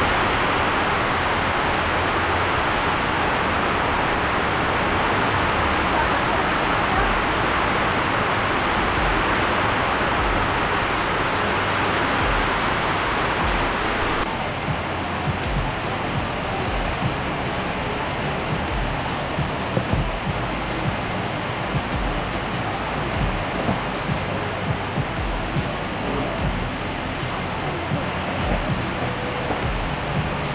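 Heavy rain falling on a corrugated metal roof, a loud steady rushing noise. About halfway through the hiss softens and scattered sharp ticks come through.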